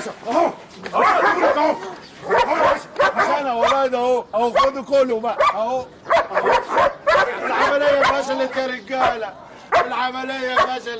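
Dogs barking and yelping amid men's wordless yells and cries during a scuffle, in a loud, continuous run of short cries with a few longer drawn-out ones near the end.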